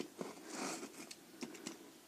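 A utility knife blade cutting slits in a sheet of paper on a hard board: faint, irregular small clicks and scrapes.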